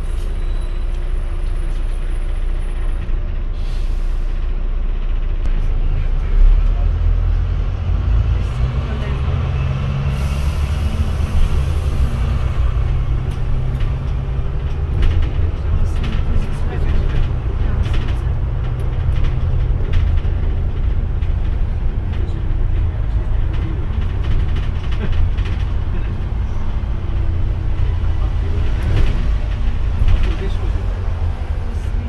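Double-decker bus running, heard from the upper deck: a steady low engine and drivetrain drone with road noise. The engine note rises as the bus pulls away a few seconds in, and there is a brief high hiss of air near the middle.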